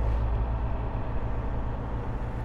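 Semi-truck's diesel engine running steadily at low speed, heard from inside the cab as the truck rolls slowly.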